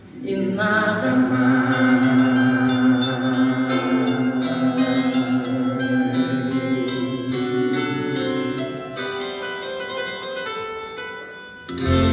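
Live pop band and string orchestra playing a ballad, with quick plucked or struck notes running through it and a long held note in the first half, sung by a male voice without words. The music thins out just before the end, then comes back in.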